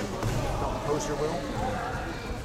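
Indistinct voices echoing in a large sports hall, with a few dull thumps.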